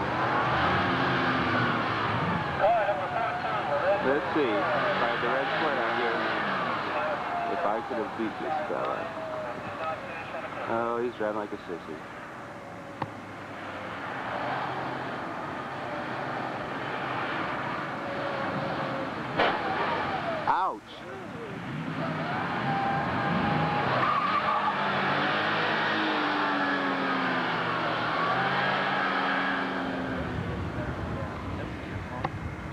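Porsche 911's air-cooled flat-six revving up and down on an autocross run, its pitch climbing and falling again and again with throttle and gear changes, with tyres squealing through the corners. The sound cuts out briefly about two-thirds of the way through.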